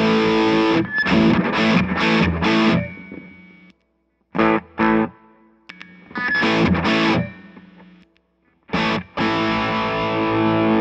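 Electric guitar played through a Suhr Eclipse dual overdrive/distortion pedal with a channel engaged: strummed distorted chords that ring and die away, two short pauses, then choppy stabs and a new chord near the end.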